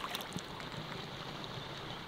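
Faint, steady outdoor background noise with no distinct events, only a light tick about a third of a second in.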